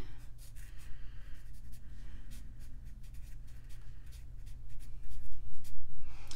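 Felt-tip marker drawing and writing on paper: a run of short, scratchy pen strokes that grow louder near the end, over a steady low electrical hum.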